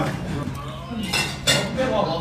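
Chopsticks clinking against ceramic bowls and plates while eating, with two sharp clinks in the second half, over a murmur of diners' voices and a steady low hum.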